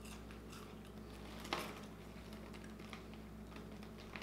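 Faint crunching and clicking of kettle corn being chewed, with one sharper crunch about one and a half seconds in.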